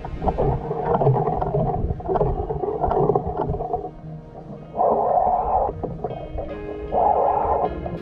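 Muffled underwater rumble and gurgling picked up by a submerged camera, with two louder bursts of rushing noise about five and seven seconds in.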